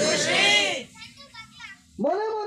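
A voice in drawn-out, rising-and-falling tones that fades after less than a second, followed by faint fragments of voice. Another voice starts at the very end.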